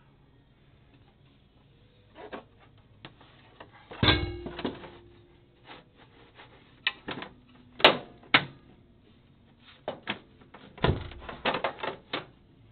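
Sheet-metal pin deflector guard on a Brunswick GS-X pinsetter elevator being fitted back into place: a series of metal clanks and knocks, some ringing briefly. The loudest come about four and eight seconds in, with a quick cluster near the end.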